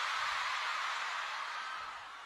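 Concert crowd of fans screaming and cheering, a steady din that eases slightly near the end.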